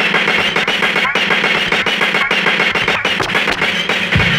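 DJ's turntable routine played from vinyl through a DJ mixer: a dense, steady drum beat cut from records.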